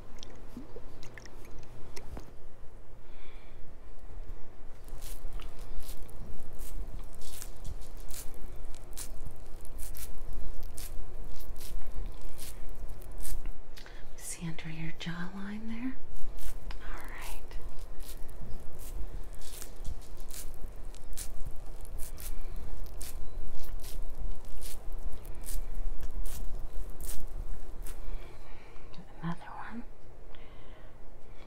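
Close-mic ASMR cleansing sounds: a damp cloth rubbed and dabbed against the microphone, giving an irregular run of soft crackling clicks. About halfway through comes a short hum that rises in pitch.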